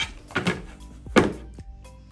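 An infant CPR manikin knocking against a tabletop as it is tilted and set back down: a few dull thunks, the loudest about a second in. Quiet background music underneath.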